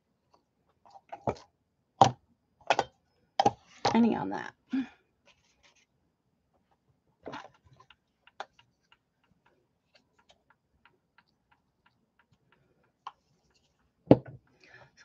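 Sharp knocks and clicks of craft supplies and a plastic stencil being handled on a work table, bunched in the first few seconds. After that comes a long string of faint, irregular small ticks as a blending tool is worked over the stencil.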